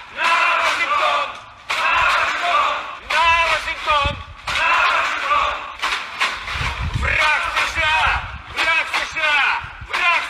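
A crowd of protesters chanting slogans in Russian in unison, loud shouted voices coming in repeated short bursts.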